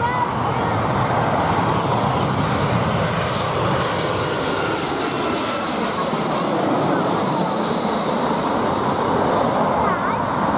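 Twin-engine narrow-body jet airliner (Airbus A320 family) on final approach with its landing gear down, passing low overhead: a steady, loud engine roar whose whine slides down in pitch during the second half as it goes by.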